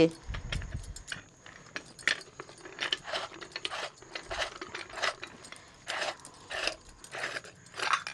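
Stainless-steel canister and its screw lid clinking and scraping as a steel rod through the lid's knob levers the stuck lid round. The sound is a string of short, irregular metallic clicks and rasps, with a dull thump about half a second in.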